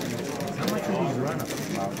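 Background chatter: several people talking at once, no single voice standing out.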